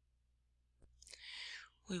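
A woman's audible in-breath before speaking, preceded by a faint click, with the start of her next word at the very end.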